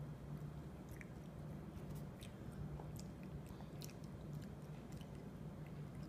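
A small child faintly chewing a mouthful of carrot, with soft scattered mouth clicks over a steady low hum.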